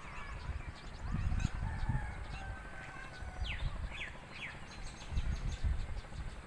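Birds calling in the open, with three short, quick falling notes in the middle, over an uneven low rumble.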